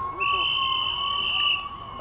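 A whistle blown in one long, steady, high blast of well over a second, signalling the end of the game round.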